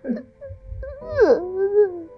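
A person crying out in tears, a wailing sob: a short sob at the start, then a long cry that falls sharply in pitch about a second in and is held low to the end.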